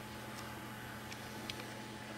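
Quiet room tone: a steady hiss with a low electrical hum, broken by three or four faint, brief ticks.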